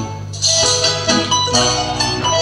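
Russian folk dance music: a lively tune led by plucked strings, with a brief lull in the first half second before the notes resume.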